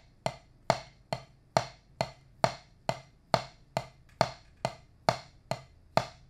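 A single wooden drumstick striking a Meinl rubber practice pad in steady, evenly spaced eighth notes, about two strokes a second.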